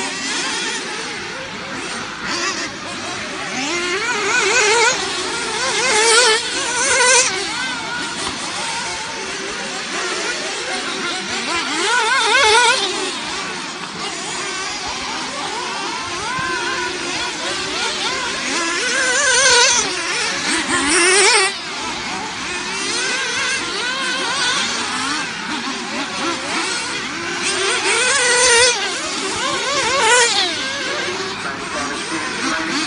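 Several radio-controlled off-road racing cars running around a dirt track, their motors whining and buzzing with a pitch that keeps rising and falling as they accelerate and brake. The sound swells several times as cars pass close by.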